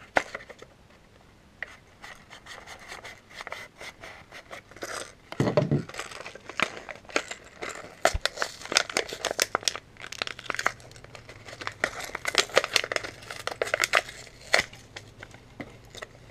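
Clear plastic lure packaging on a card backing being cut with a folding knife and torn open by hand, a long run of sharp crackling and crinkling of plastic.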